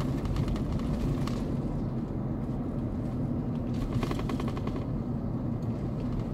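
Car driving, with steady engine and road noise heard from inside the cabin. Brief stretches of rapid clicking or rattling come about a second in and again around four to five seconds in.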